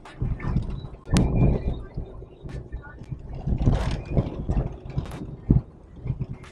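Bumps and rattles inside a moving car's cabin: irregular low rumbling swells with scattered small clicks and knocks, and a sharp thump near the end.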